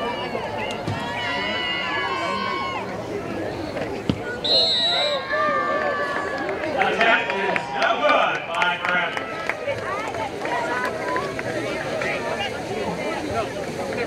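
Spectators at a high school football game talking and shouting. A sharp thump comes about four seconds in, then a short high whistle, then a burst of louder shouting.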